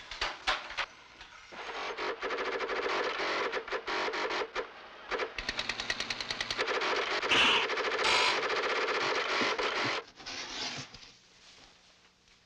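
Electronic sci-fi sound effects of a futuristic garment-making machine at work: rapid buzzing pulses and warbling electronic tones, with two short hissing bursts about seven and eight seconds in. The machine noise stops abruptly about ten seconds in.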